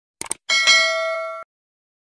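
Subscribe-button animation sound effect: a quick double mouse click, then a bright bell ding that rings for about a second and cuts off suddenly.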